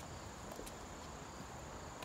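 An insect's steady, high-pitched trill in the woods, with a few faint footsteps on a dirt trail.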